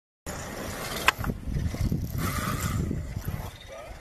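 Low, uneven rumble of a safari vehicle's engine running, with a single sharp click about a second in.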